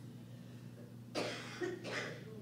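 A person coughing twice in quick succession, a little past the middle, over a steady low electrical hum.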